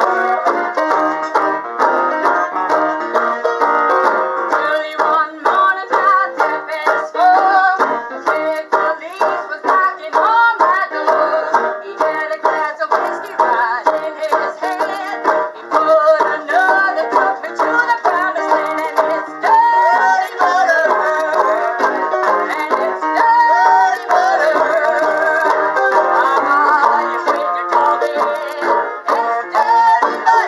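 Live acoustic band music: a banjo ukulele strummed and plucked steadily while a woman sings along.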